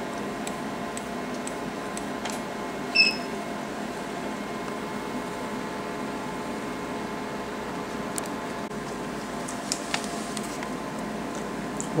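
2007 Alma Harmony laser console running with a steady machine hum. One short beep comes about three seconds in, and a few faint clicks are scattered through.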